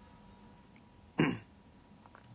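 A man's single short "hmm" about a second in, breathy at the start and falling in pitch, against quiet room tone.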